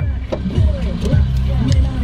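Background music with a steady bass line, over a car's passenger door being opened, with a sharp click right at the start.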